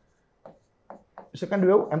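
Pen stylus writing on an interactive whiteboard screen: a few short, separate strokes as words are written, then a man's voice comes in near the end.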